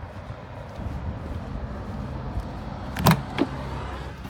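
A motorhome's habitation door being handled as someone goes in: a sharp latch click about three seconds in, then a lighter knock, over a low rumble.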